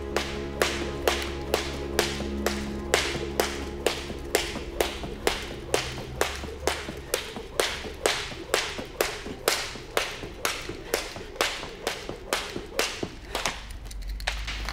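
A steady rhythm of sharp slaps, about two a second, over film score music that fades out as the slaps go on.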